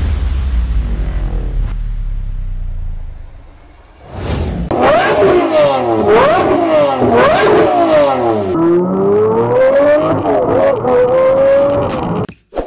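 A deep low boom dies away over the first three seconds or so. Then, about five seconds in, a Lamborghini Murciélago's V12 engine revs in a series of quick blips, each rising and falling in pitch, followed by one longer, slower climb in revs that cuts off suddenly near the end.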